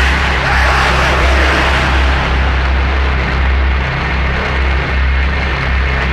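Industrial power-electronics noise: a dense wall of harsh, distorted noise over a deep drone that pulses unevenly.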